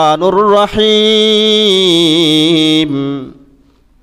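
A man's voice chanting one long, drawn-out sung phrase in the melodic intonation of a Bangla sermon, the note held with a slight waver and fading out a little after three seconds in, followed by a brief pause.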